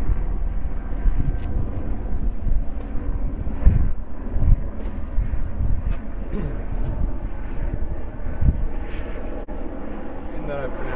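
Hand pump on a bottle of marine gear oil being worked stroke by stroke, forcing oil into the outdrive to flush out water-contaminated lube, with faint clicks about once a second over a low rumble.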